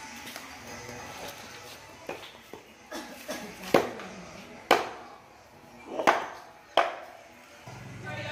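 A cleaver chopping herbs on a wooden chopping board: a series of about eight sharp, irregularly spaced chops, the loudest near the middle.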